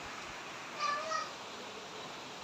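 Steady hiss of typhoon rain and wind, with one short high-pitched call, rising then falling, about a second in.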